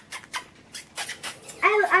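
A string of light clicks and taps as a cardboard package is handled and set down on a countertop. Near the end a woman starts speaking in a high voice.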